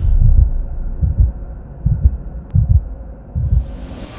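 Logo-intro sound design: deep bass thumps, often in pairs, over a low hum, with a whoosh swelling up near the end.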